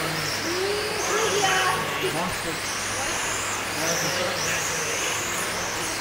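1/10-scale radio-controlled sprint cars lapping a dirt oval, their motors making a high whine that rises and falls every second or two as they speed up and slow for the turns, over a murmur of voices.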